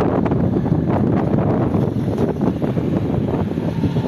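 Wind buffeting the recording microphone: steady, fairly loud low rumbling noise.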